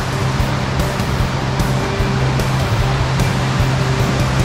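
Steady rushing of the Chilliwack River's whitewater rapids, mixed with background music that has sustained low notes and a beat a little more than once a second.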